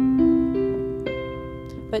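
Piano notes struck one after another, about four in the first second, each ringing on and slowly fading: a closing flourish on the song's chords.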